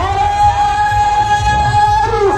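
Music with singing: one voice holds a single long, steady note over a low, pulsing beat.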